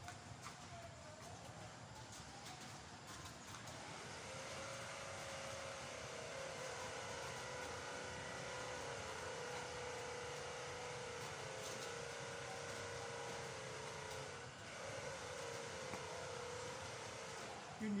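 A distant engine drone: a steady, slightly wavering tone that grows louder about four seconds in, holds, and fades near the end.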